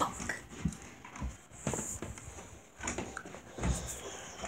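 Irregular dull thumps of footsteps walking down stairs, mixed with handling knocks from a handheld phone, about six in four seconds.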